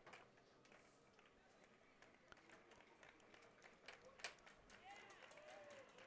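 Near silence: faint open-air ballfield ambience with a few faint clicks, and faint distant voices in the second half.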